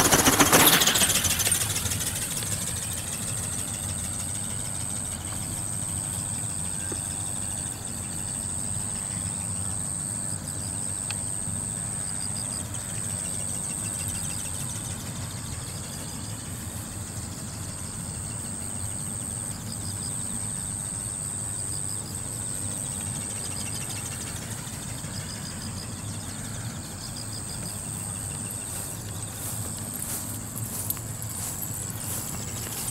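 Small electric ornithopter flying overhead: its brushless motor and gear drive give a steady high whine over a low rushing noise of wind on the microphone. A loud rush of noise comes in the first second or so.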